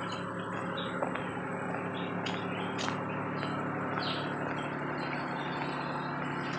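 Tropical forest ambience: insects keep up a steady high-pitched drone while birds give short chirps every second or so, over a steady low background hum.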